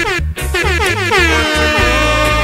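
Reggae DJ mix with a DJ sound effect laid over the bass line: a quick run of falling pitch sweeps that pile up and settle into held tones.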